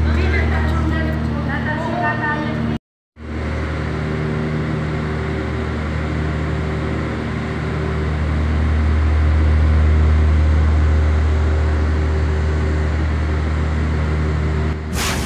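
A steady low mechanical hum, like a running engine, with people's voices over it for the first two or three seconds. The sound drops out completely for a moment about three seconds in, then the hum carries on alone.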